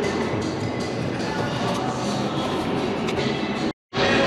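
Background music over a steady, loud indoor din. It drops out abruptly for a split second near the end.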